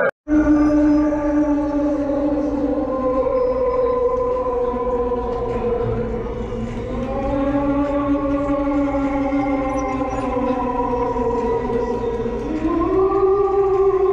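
A long, wavering ghostly moan: one drawn-out eerie tone that slides slowly down and up in pitch and climbs near the end, over a steady low hum.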